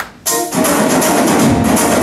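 Loud dance music with drums and percussion, breaking off for a moment right at the start and then coming back in at full strength.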